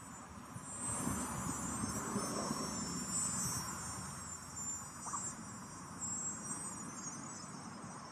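A steady, high-pitched insect chorus, with a louder low rustling noise for a couple of seconds starting about a second in.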